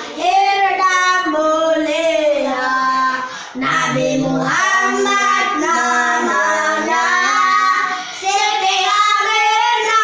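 Young children singing a sholawat, an Islamic devotional song in praise of the Prophet Muhammad, together with a man leading them. The song goes in phrases, with brief pauses between them.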